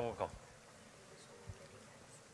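A voice says "come" at the start, then faint room noise with a soft low thump about one and a half seconds in.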